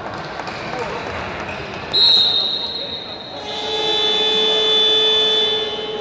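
Handball referee's whistle blown once, loud and high, about two seconds in. Then the hall's electronic timing horn sounds one long steady tone for about two seconds. Under both, players' voices and hall noise carry on.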